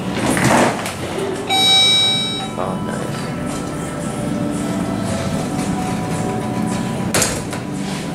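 Electronic elevator arrival chime sounding once: a bright ringing tone with overtones, about a second long, starting about a second and a half in.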